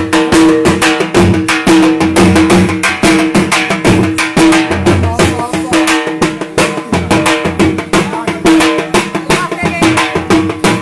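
Punjabi dhol drum beaten in a fast, steady jhumar rhythm: dense sharp stick strokes on the treble head over deep booming strokes on the bass head.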